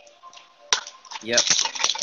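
A single sharp click about three-quarters of a second in as Pokémon trading cards are handled.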